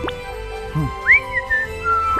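Cartoon whistle sound effects over background music: a quick rising whistle sweep at the start, then about a second in a whistled note that rises, arches over and settles on a lower pitch.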